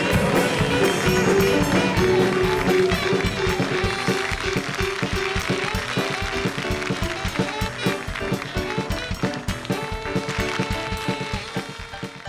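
Upbeat instrumental music from a band with keyboard, drum kit and saxophone, with a steady drum beat and held notes, fading out near the end.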